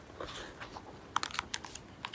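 Paper pages of a large picture book being turned by hand: a soft rustle, then a quick run of crisp clicks and flicks about a second in.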